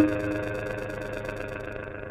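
Serge modular synthesizer playing: a sharp, plucked-sounding note hits right at the start and decays, over sustained droning synth tones with a steady low hum and a fast, regular high ticking pulse.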